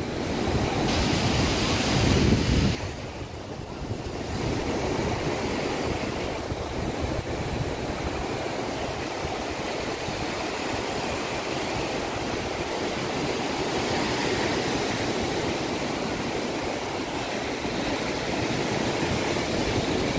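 Sea surf breaking and washing up a sandy beach, a steady rushing wash of waves, with wind buffeting the microphone. It is loudest for the first two or three seconds, then drops sharply and settles into an even roar of surf.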